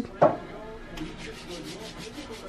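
Soft rubbing and rustling, with a short voice sound just after the start.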